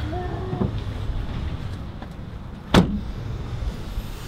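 A vehicle door slamming shut once, sharply, about two and three-quarter seconds in, over a steady low outdoor rumble. A brief low tone sounds just at the start.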